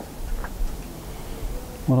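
A steady room hum and hiss during a pause in speech, with a faint held tone in the middle; a man's voice starts near the end.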